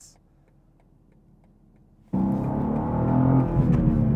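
Near silence for about two seconds, then the BMW M2's twin-turbo inline-six starts up loud inside the cabin as the car accelerates, its pitch rising and falling.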